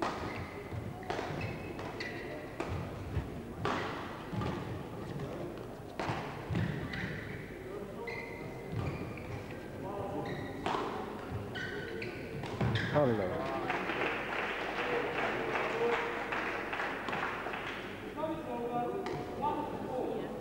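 Badminton rally in a sports hall: repeated sharp racket strikes on the shuttlecock and short squeaks of shoes on the court floor, echoing in the hall. About two thirds through the rally ends and the crowd claps and talks for a few seconds.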